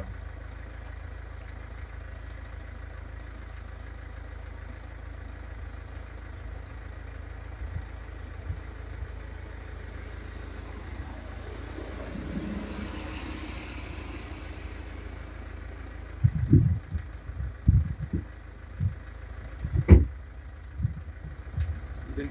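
Steady low rumble, with a road vehicle passing about halfway through, its sound swelling and then fading. Several short low thumps near the end.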